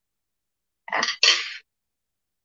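A person's short, breathy 'yeah' about a second in, in two quick parts, the second a noisy puff of breath.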